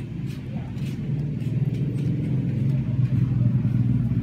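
A low, steady engine-like rumble that grows gradually louder, with faint background voices.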